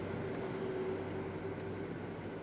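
Steady low background hum with a faint hiss, holding even throughout: room tone.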